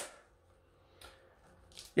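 Near silence: room tone in a pause between spoken sentences, with one faint, very short noise about a second in.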